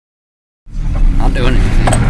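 Car driving on a dirt track, heard from inside the cabin: a loud, steady low engine and road rumble that cuts in about half a second in.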